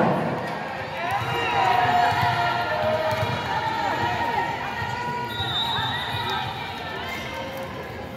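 Athletic shoes squeaking on the indoor court: many short, high squeaks, rising and falling and overlapping as players move. A steady high tone about a second long comes near the middle, over crowd chatter in a large hall.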